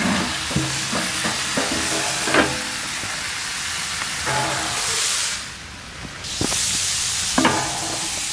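Minced-beef burger ring sizzling in a hot cast-iron plancha over a wood fire, with knocks and scrapes of a wooden board and the pan while the meat is flipped. The sizzle falls away briefly a little past five seconds in and comes back strongly about six seconds in as the meat meets the hot pan again.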